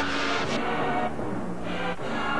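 Dramatic instrumental end-credits music with held notes, a loud burst of noise in the first half-second and a shorter one near the end.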